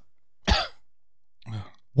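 A man coughs sharply once, then makes a short throat-clearing sound about a second later.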